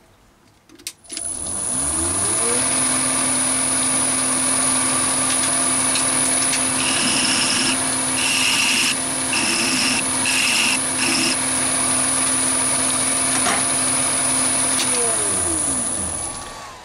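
Chinese mini lathe motor spinning up, running steadily with a thin high whine, and spinning down near the end. Midway there are about four strokes of a flat file on the spinning bar, deburring its corners.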